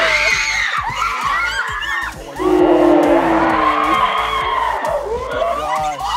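A group of young women fans screaming in excitement, played back in slow motion so the screams come out as long, drawn-out, wavering cries, with a brief drop about two seconds in.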